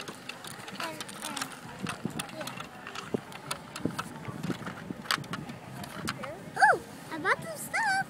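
Scattered small clicks and crunches of handling on gravel, then a child's high voice making a few short wordless calls that slide up and down in pitch near the end.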